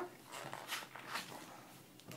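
Faint handling noises in a small room: a few soft rustles and scrapes.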